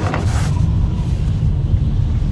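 Steady low rumble of a car's engine and road noise, heard from inside the cabin while driving, with a brief faint hiss near the start.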